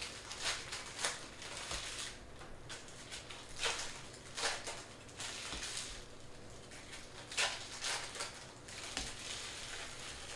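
Trading cards being handled and sorted by hand: irregular swishes, slides and light crinkles of card stock, with a few louder strokes about four seconds in and again near seven and a half seconds.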